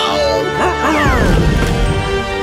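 Action score music laid over crashing sound effects of breaking pavement, with a heavy low rumble coming in about halfway and several quick rising and falling pitch glides.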